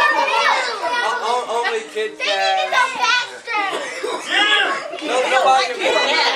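Overlapping voices: several people talking and calling out over one another, crowd chatter with no single clear speaker.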